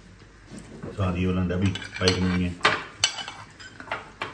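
Metal spoons scraping and clinking against a ceramic serving plate as the last of the food is scooped off it, with a few sharp clinks in the second half.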